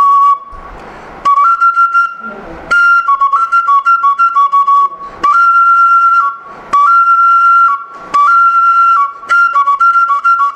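Igbo oja, a carved end-blown wooden flute, played in short phrases that switch between two notes, a lower and a higher one. Some notes are held and others come as quick fluttering repeats, with short breaks between phrases, one near the start and another around two seconds in.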